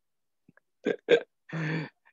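A man's brief non-word vocal sounds: two quick breathy bursts about a second in, then a short held sound on one pitch, a wordless reaction just before speech.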